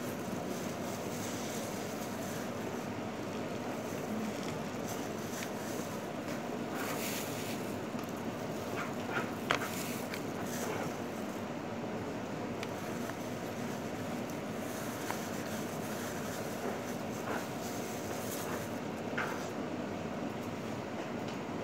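Steady mechanical background rumble, like room ventilation or an air-conditioning unit. A few short clicks and crinkles of plastic food wrap being handled come through, the sharpest about halfway through.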